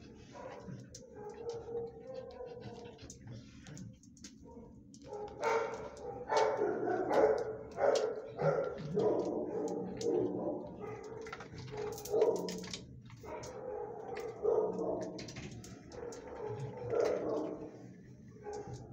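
Dog barking repeatedly, starting about five seconds in and carrying on in a run of loud barks, with light clicking before it.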